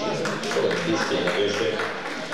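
Men's voices in a large hall, with several short, sharp clicks scattered through.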